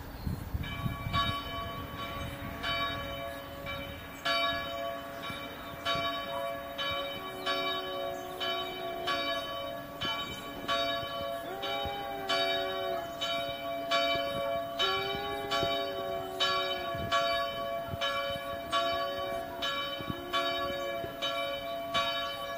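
Church bell ringing in quick, repeated strokes, about two a second, each stroke over a steady lingering hum. From about seven seconds in, a separate lower, drawn-out wavering tone rises and falls several times along with it.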